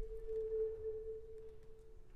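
A single pure, held note in a violin-and-percussion duo, with no overtones to speak of. It swells a little about half a second in and fades away near the end.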